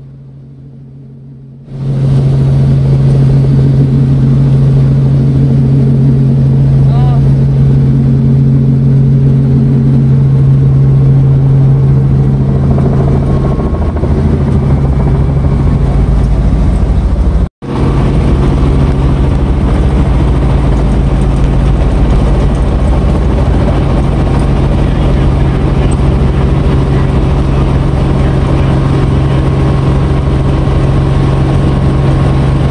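Helicopter cabin noise heard from inside the cockpit: a loud, steady drone of engine and rotor with a strong low hum. It starts about two seconds in, cuts out for an instant just past the middle, and comes back with a deeper rumble.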